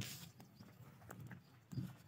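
Faint footsteps on a concrete road strewn with loose gravel: a short gritty scrape at the start, then a few soft irregular steps. A short low sound comes near the end.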